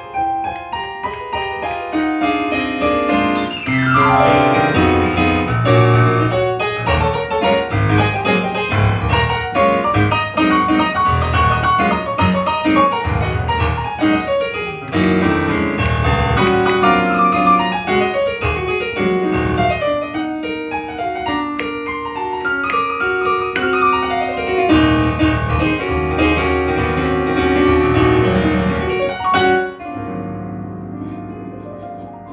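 Solo playing on a Yamaha CP stage piano: dense chords and melody, with fast runs sweeping down the keyboard three times. The playing drops off just before the end.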